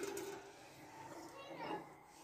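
Quiet room tone with faint voices in the background, including a brief faint voice about one and a half seconds in.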